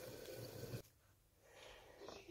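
Near silence: faint room tone, cutting out completely for about half a second just under a second in.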